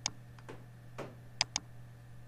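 Computer mouse clicks: one click at the start, then two quick clicks about a second and a half in, over a low steady hum.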